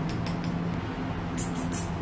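Handheld battery milk frother whisking in a glass mug of coffee: a steady motor whir, with a few sharp clicks in the second half.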